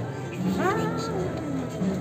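Music over crowd voices, with a pitched sound that slides upward about half a second in.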